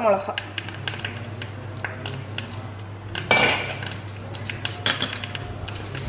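Tempering crackling in a small steel pan over a gas flame, with scattered sharp clicks and metal clinks of the utensils against the pan over a steady low hum. A short, louder rush about three and a half seconds in.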